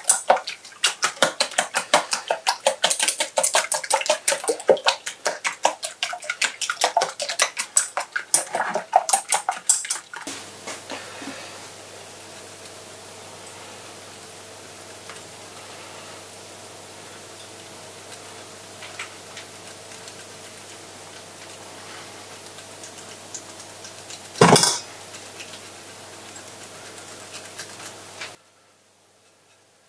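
A fork beating eggs in a stainless steel mixing bowl: rapid metallic clicking strokes against the bowl for about ten seconds, then they stop. After that a low steady hum, with one loud knock about 24 seconds in.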